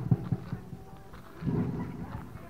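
A few dull low thumps, then a louder, longer low thud about one and a half seconds in: footsteps and handling knocks on a handheld camera while its holder walks.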